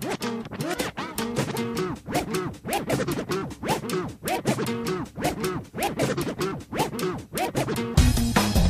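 Music soundtrack built on DJ-style record scratching: quick rising-and-falling pitch sweeps, several a second, over a beat.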